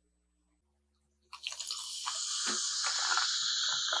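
Carbonated Narangd Cider soda fizzing in a glass: a dense, crackling hiss of bursting bubbles that starts suddenly about a second in and carries on steadily.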